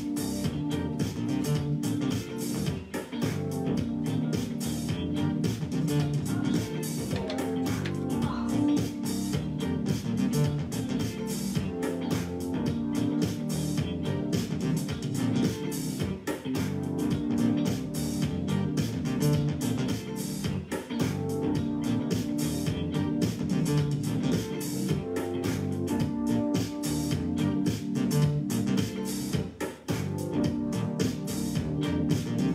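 Guitar-led music with bass and a steady beat, played for the dance.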